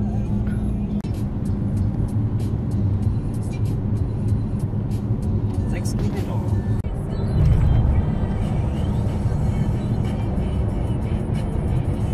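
Engine and road noise inside a moving VW bus's cabin: a steady low drone that swells for about a second near the middle.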